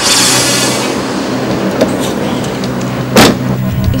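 A car engine running, with a loud rush of noise at the start that fades away over the first second. A single sharp thump comes a little after three seconds in.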